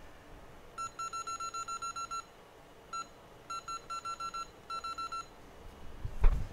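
Short, same-pitched electronic beeps in quick runs of several a second, with a single beep between them: key beeps of a hot air rework station's control panel as its settings are stepped up before desoldering.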